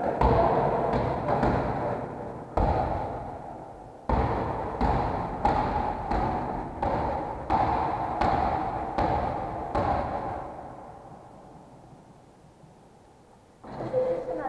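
A basketball bouncing on a wooden gym floor, each bounce booming and echoing through the large hall; from about four seconds in it settles into a steady dribble of roughly one bounce every 0.7 s, which stops about ten seconds in.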